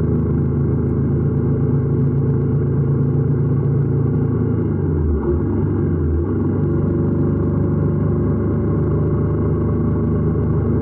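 Honda parallel-twin motorcycle engine running at a steady cruise, with a brief dip in revs about halfway through.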